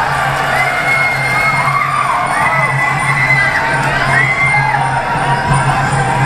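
Sarama fight music, the Javanese oboe (pi chawa) playing long, gliding held notes, with the crowd shouting and cheering over it.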